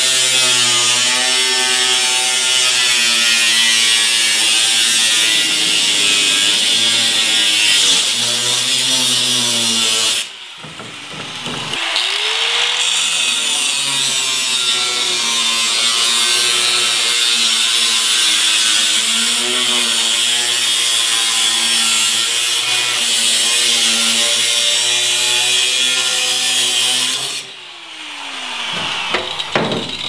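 Ryobi angle grinder with a cut-off disc cutting through sheet steel, a steady motor whine under a bright grinding hiss. It stops about ten seconds in and spins back up with a rising whine, cuts on, then winds down with a falling whine shortly before the end, followed by a few clicks.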